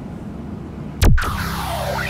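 Steady road and engine noise inside a moving pickup's cab, then about a second in a sharp electronic hit with a falling pitch, followed by a synthesized whoosh of sweeping tones over a held chord: an edited transition sound effect.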